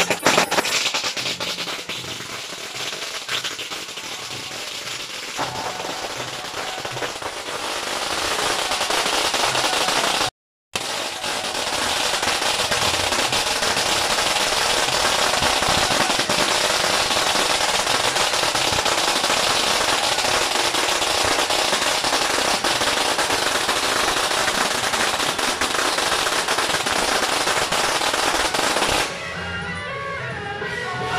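A long string of firecrackers going off in a dense, continuous crackle. It builds over the first several seconds, holds loud and steady, and stops shortly before the end. The sound cuts out completely for a moment near the middle.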